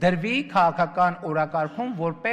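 A man giving a speech in Armenian.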